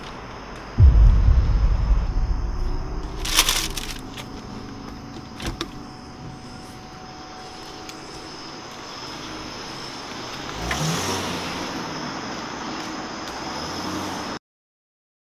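Car engine starting about a second in with a sudden loud low rumble that settles into a steady idle, heard from inside the cabin. A short burst of noise and a click come a few seconds later, and the engine note rises briefly near the end.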